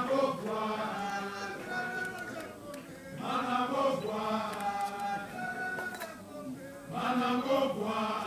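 A group of voices chanting a traditional song in phrases that start again about every three and a half seconds.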